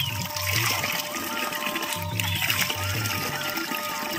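Mountain spring water pouring from a wooden spout onto rocks and splashing into cupped hands, under background music with a steady beat.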